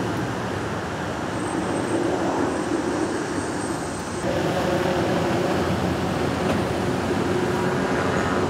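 Steady running noise of idling vehicle engines, with a humming tone that shifts slightly about four seconds in.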